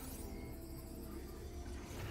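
Quiet cinematic background music from the animated episode's soundtrack, with sustained low tones and a faint swish at the start.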